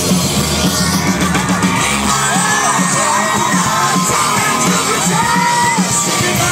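Rock band playing live, with electric guitar, drums and a woman singing lead, heard from in the crowd; her voice bends up and down in long arching phrases.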